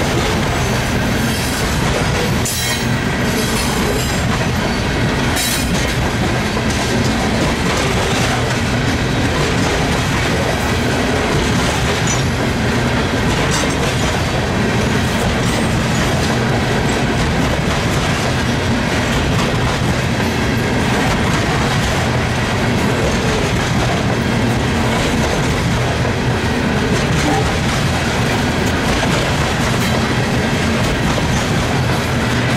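Freight train of coal hopper cars rolling past at close range: steel wheels running over the rails with a steady rumble and rhythmic clickety-clack at the rail joints, and a few brief sharper noises in the first several seconds.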